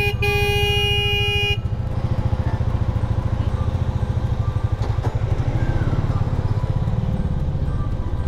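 Motorcycle horn sounded once, a steady single-pitched blast of about a second and a half, over the motorcycle's engine idling with a low, pulsing exhaust that runs on after the horn stops.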